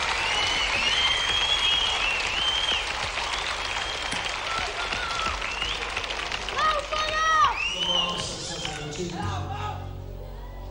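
A concert audience cheering, applauding and whistling as a live performance begins, with shouts rising out of the noise around the middle. Near the end the crowd thins and a low steady note comes in.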